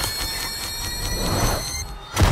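Sci-fi sound effect: several high ringing tones held steady over a fast, even ticking and a low rumble, with a whoosh swelling about a second and a half in before it all cuts off sharply.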